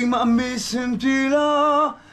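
A man singing: a few short notes, then one long held note from about a second in, its pitch wavering slightly, cut off just before the end.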